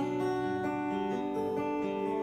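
Solo acoustic guitar playing a folk song's chords between vocal lines, notes ringing and changing every half second or so.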